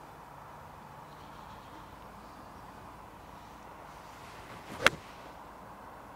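A golf iron striking the ball once on a fairway approach shot: a single sharp, crisp click about five seconds in, over a low steady outdoor background.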